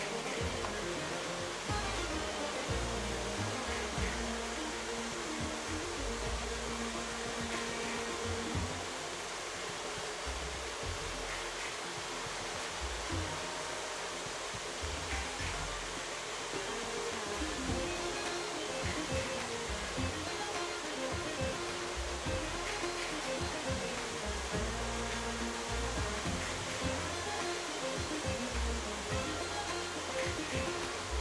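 Several toy electric trains running on a home layout: a steady whir of their motors and wheels on the metal track, with a hum that shifts in pitch.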